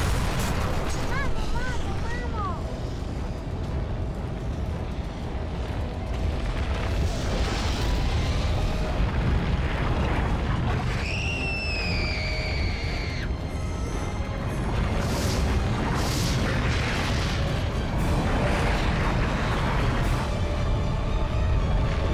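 Film soundtrack of a volcanic eruption: a continuous deep rumble of the onrushing ash cloud with booms and blasts, under dramatic music. About eleven seconds in, a high wailing tone falls slightly in pitch and is held for about two seconds.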